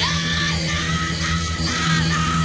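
Live rock band recording from 1970, with electric guitar, bass and drums playing under a singer who yells. The voice slides up at the start, then holds long high notes.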